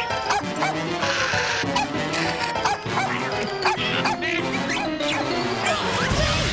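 Cartoon brawl sound effects over a busy music score: a rapid string of short animal cries mixed with crashes and scuffling, with a burst of hissing noise about a second in.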